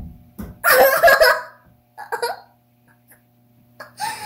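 A dull knock, then a girl's loud high squeal of laughter lasting about a second, and a shorter burst about two seconds in.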